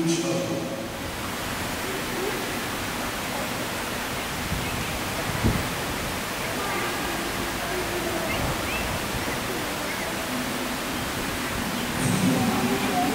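A steady rushing hiss of background noise with faint, indistinct voices, and a single knock about halfway through.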